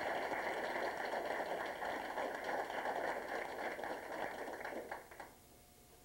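A small crowd applauding, the clapping dying away about five seconds in.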